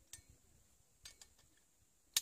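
Faint metallic clicks of a carabiner and a Sqwurel rappel device being handled as the device is worked onto the carabiner: one click just after the start and a few more about a second in.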